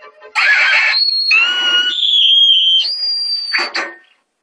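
Loud cartoon sound effects: a sudden rush of noise, then a run of high whistling tones that step and slide in pitch, ending in another short burst of noise.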